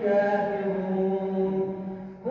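An imam chanting Quran recitation in melodic tajwid style into a microphone. His male voice holds one long syllable that settles slightly lower in pitch and fades near the end.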